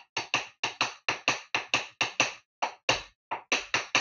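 Taiko drumsticks striking a hard practice surface in a fast, uneven rhythm of dry knocks, about six a second.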